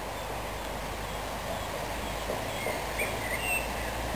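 Steady outdoor background noise with a few short bird chirps in the second half.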